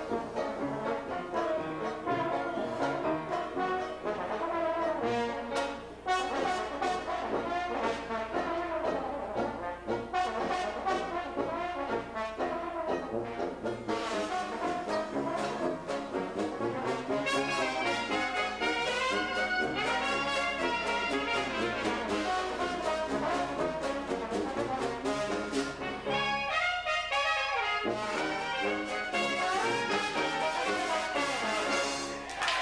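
Traditional jazz band playing together: trombone, clarinet, trumpet and sousaphone in ensemble. Near the end the low parts drop out for about a second before the full band comes back in.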